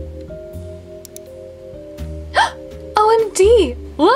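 Soft background music with sustained notes. In the second half a girl's voice makes short wordless sounds whose pitch swoops up and down.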